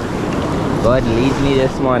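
Surf washing up the sand around the feet, with wind on the microphone, and a man's voice talking over it in the second half.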